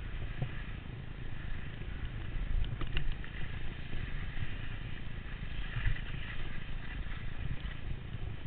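Skis sliding and scraping over snow on a downhill run, with uneven wind noise on a GoPro action camera's microphone.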